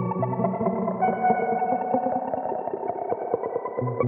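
Layered guitar loop playing back through a Strymon Volante tape-style sound-on-sound looper with echo repeats. Held notes overlap many picked attacks, over a low line that drops out briefly and comes back.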